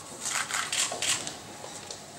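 Paper rustling as contract pages are lifted and turned over on a table: a few quick rustles in the first second or so, then quieter handling.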